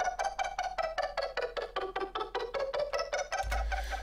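Synth arpeggio from a Native Instruments Massive patch: short plucked notes, about five a second, stepping up and then back down the G minor scale in eighth notes.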